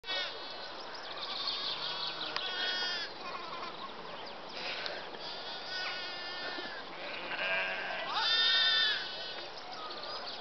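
Lambs bleating, a string of high calls one after another, the loudest and longest about eight seconds in.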